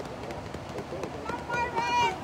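A sled dog team running toward the listener, their paws on packed snow. A raised voice calls out over the second half.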